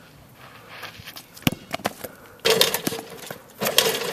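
Basketball bouncing on an outdoor hard court: a few sharp thuds about a second and a half in, followed by louder stretches of scuffing, rustling noise as a player moves in.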